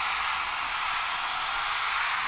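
A steady hiss of white noise with the bass cut away and no beat, part of a hardcore electronic track's breakdown. A faint steady tone runs through it.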